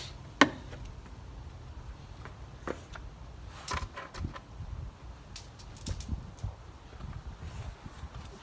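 Scattered clicks and light knocks of hands working on plastic trim and parts inside a minivan's cargo area, with one sharp click about half a second in as the loudest.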